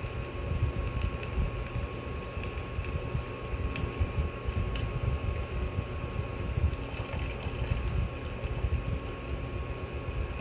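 Arctic Air personal air cooler's small fan running steadily, with a faint held motor whine over a low airy rush.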